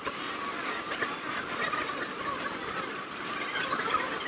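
Pencil scratching on paper in quick sketching strokes, over the low murmur of a shop.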